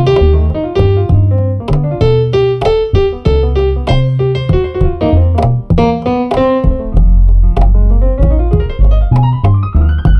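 Baby bass (electric upright bass) being plucked, playing a Peruvian-style line of short, deep notes, with a long slide up in pitch near the end.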